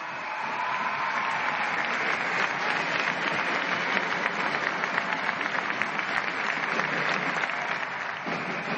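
Large crowd applauding steadily, a dense mass of hand claps that eases slightly near the end.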